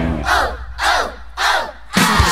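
A group of children's voices shouting in unison three times, each shout falling in pitch, over a low steady hum, in a break in the music.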